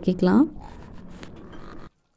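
Thick masala gravy simmering in a steel pan: a faint, crackly bubbling that cuts off abruptly near the end.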